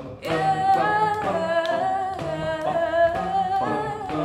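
Singing: a voice holding a wavering, ornamented melodic line with vibrato, over a low note that sounds in short pulses about twice a second.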